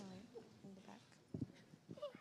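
Faint, distant voices murmuring in a hall between speakers, with a soft low knock about one and a half seconds in.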